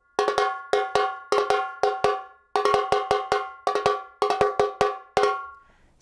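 Contemporânea repique, a high-pitched metal-shelled Brazilian drum, played with plastic whippy sticks in a fast pattern of about five strokes a second, each stroke ringing with a bright pitched tone. The playing stops about five seconds in and the ring dies away.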